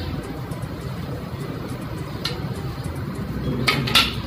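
Steady low background rumble, with a light click about halfway through and two sharper knocks near the end as the machete is handled.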